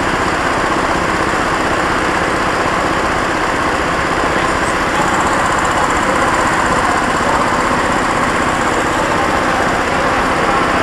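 Go-kart engine running under load as the kart laps the track, heard close from a camera mounted on the kart: a loud, steady, rapid chatter that gets slightly louder about five seconds in.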